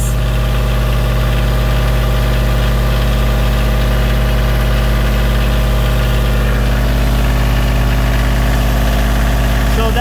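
Kioti CK2610 tractor's three-cylinder diesel engine running steadily, heard up close in the open engine bay while the fuel screw on its injection pump is being turned out.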